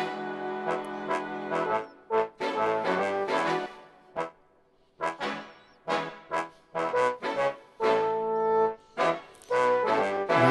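Sampled big-band trumpets and trombones (Kontakt instruments in Logic Pro) play the brass parts of a vintage-style theme tune. They play a pattern of held chords and short stabs, with a brief pause about four seconds in.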